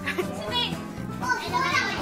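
Children's voices over background music.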